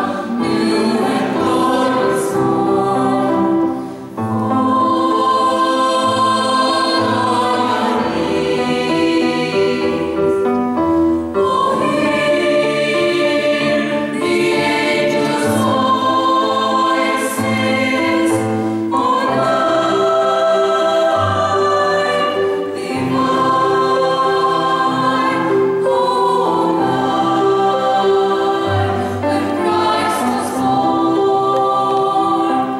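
Mixed choir of men and women singing, with long held notes.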